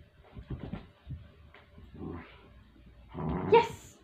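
A puppy scuffling and padding on carpet with a few soft knocks as it goes for a rubber toy. Near the end comes a short, pitched sound as it grabs the toy in its mouth.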